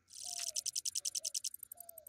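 An insect's rapid pulsed high-pitched trill, about a dozen pulses a second, starting just after the opening and thinning out about one and a half seconds in, over faint repeated lower calls.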